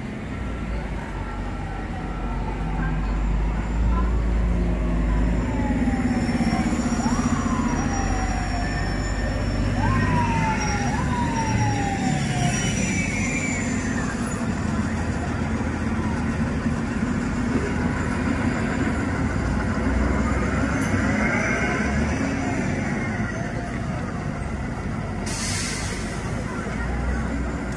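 Heavy city street traffic with transit buses pulling past, a steady rumble of diesel engines and tyres. In the middle, a siren sounds several times, rising sharply and falling away, and a short hiss comes near the end.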